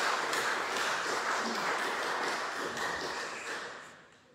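A congregation applauding, the clapping dying away near the end.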